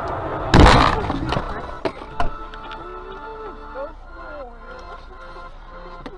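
A loud crash of a road collision about half a second in, followed by two shorter, sharper knocks.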